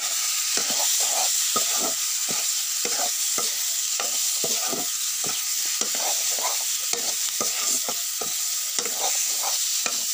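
Pork and vegetables frying with a steady sizzle in a black iron kadai, while a metal spatula stirs and scrapes the pan in quick, irregular strokes, about two or three a second.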